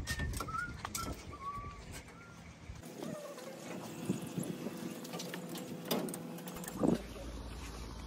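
Birds calling outdoors, with scattered light clicks and knocks and one louder short clatter near the end.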